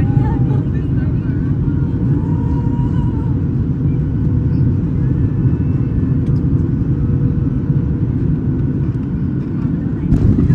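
Steady low rumble inside the cabin of a Boeing 737 airliner on final approach just above the runway: the engines and the airflow over the wing, heard from a window seat.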